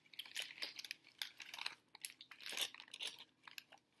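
Paper burger wrapper crinkling and crackling irregularly as it is handled and opened up to a burger for a bite.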